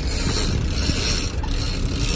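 Sportfishing boat's engines running steadily, with wind and sea noise over the open deck.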